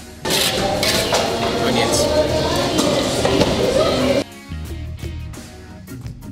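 About four seconds of loud restaurant sound: voices and the clink of dishes and cutlery. It cuts off suddenly, leaving background guitar music.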